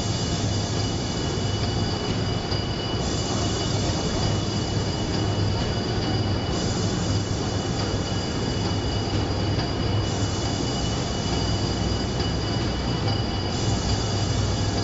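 Steady, noisy street ambience with a low hum and a continuous high-pitched whine throughout.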